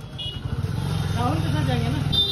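Motorcycle engine running steadily close by, coming in about half a second in. Faint voices can be heard over it.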